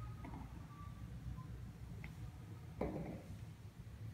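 Faint clicks and knocks of glass marbles being shot and rolling on a floor, with a slightly louder knock near the end, over quiet room tone.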